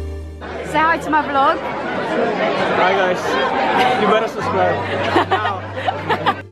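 A steady music passage cuts off about half a second in. Many people then talk over one another over background music.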